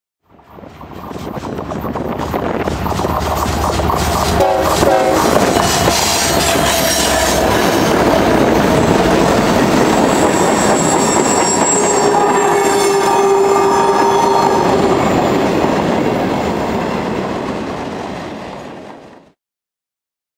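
CSX freight train's cars rushing past at speed, wheels clattering over the rails, with sustained squealing tones in the middle stretch. The sound fades in at the start and fades out near the end.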